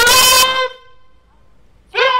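A bugle call sounded as part of military honours: one loud held note ends about half a second in, and after a short gap the next note of the same pitch starts near the end.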